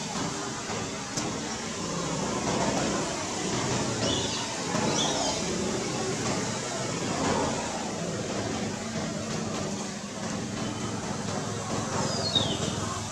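Outdoor background noise: a steady low rumble with a faint hum, and a few short, high chirps falling in pitch about four to five seconds in.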